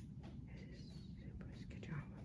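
A person whispering faintly, breathy and broken into short bits, over a low steady rumble.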